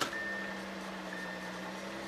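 Supercharged 3.0-litre V6 of a 2012 Audi A6 idling steadily, heard from the cabin with the driver's door open, a steady hum. Over it, a thin high electronic warning tone sounds twice, an annoying little noise.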